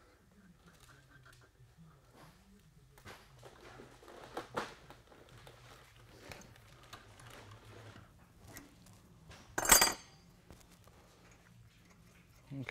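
Small metallic clicks and scrapes of a steel nut being turned by hand onto the chamfered end of a threaded rod, a check that the nut starts on the cut end. One louder metal clink about ten seconds in.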